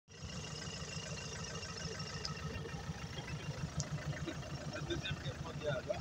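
Land Rover Series four-wheel-drive's engine running at low revs with a steady low throb, with voices nearby toward the end.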